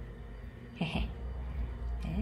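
A cat meowing once, briefly, about a second in, over a low steady hum.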